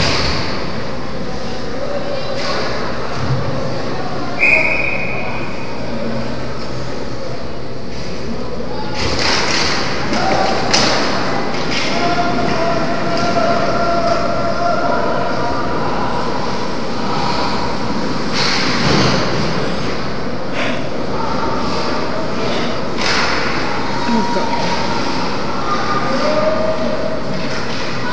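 Ice hockey game in a large rink: a steady hall rumble, with sharp thuds and clacks of pucks and sticks against the boards, and distant shouts from players and spectators. A brief whistle sounds about four and a half seconds in.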